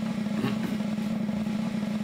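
A steady low hum, like a motor or engine running, holding one even pitch throughout.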